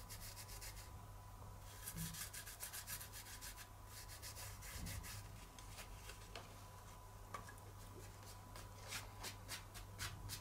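Fingertips pressing and rubbing gilding flakes (thin metal leaf) onto glued card: a faint, scratchy rustle of crinkling foil flakes and paper.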